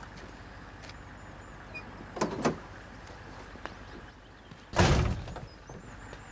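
Pickup truck's door handled as the occupants climb out, then slammed shut with a loud thump near the end, over a steady outdoor background.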